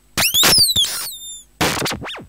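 Live-coded electronic music from synthesizers: a sharp noisy hit, then several pitched tones gliding downward in pitch, a short hiss about halfway through, and another noisy hit near the end.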